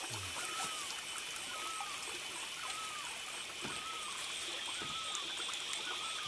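A small forest stream trickling steadily. Over it, a short call repeats about every three-quarters of a second, and a steady high buzz from insects runs underneath.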